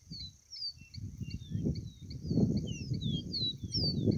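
A caboclinho seedeater singing short, falling whistled notes, repeated many times, over wind rumbling on the microphone.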